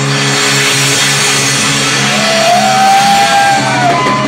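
Live metal band: distorted electric guitar and bass holding a chord, with a high guitar note sliding up and bending in pitch from about halfway through.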